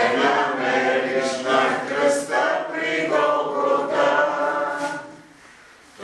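A group of people singing together in a worship song or chant, one long sung phrase that dies away about five seconds in.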